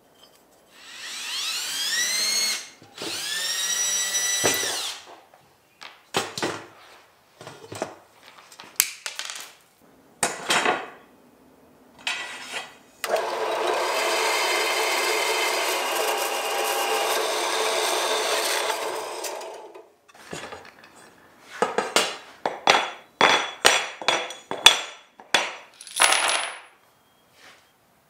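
A power tool's motor spins up twice, each run rising in pitch and then holding for a couple of seconds. About halfway through, a metal-cutting bandsaw cuts through aluminum T-slot extrusion in one steady run of about seven seconds. After that come many sharp clicks and knocks of metal parts being handled.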